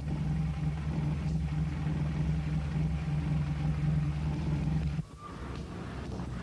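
Car engine running with a steady low rumble, which cuts off abruptly about five seconds in.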